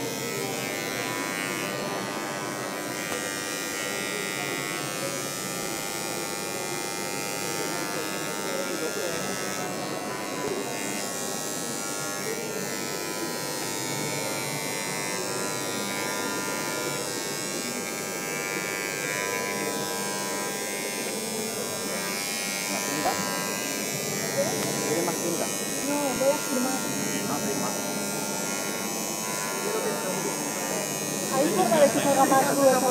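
Dremel rotary tools engraving acrylic sheet, their motors running with a steady, even high whine. Faint voices grow near the end.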